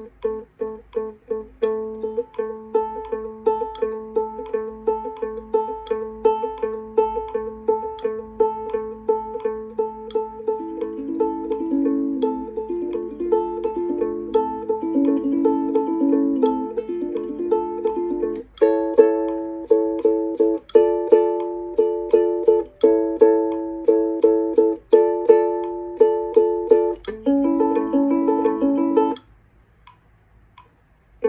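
Ukulele plucked with the fingers, playing a quick line of single notes over ringing lower strings; the notes shift about halfway through, and the playing stops about a second before the end.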